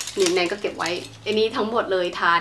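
A woman's voice speaking, over a faint steady low hum.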